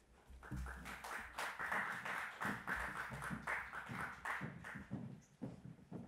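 Scattered light clapping from a few people and irregular footsteps and knocks on a wooden stage floor.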